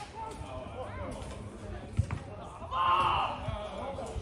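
A football kicked once with a sharp thud about halfway through, among players' voices calling across the pitch. Shortly after, a loud shout lasting about half a second.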